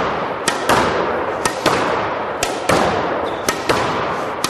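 Squash ball being volleyed in a steady rhythm: pairs of sharp cracks, the racket strike and the ball hitting the court wall, about once a second, with echo between the hits.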